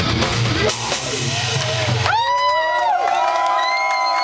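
Hard rock band playing live as a song ends: drums and distorted electric guitars, a wash of crashing cymbals from under a second in, then the drums stop about two seconds in and held, bending tones ring on over crowd cheering.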